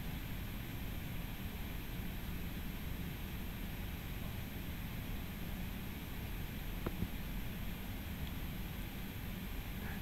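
Steady low hiss of room tone and microphone noise, with one faint click about seven seconds in.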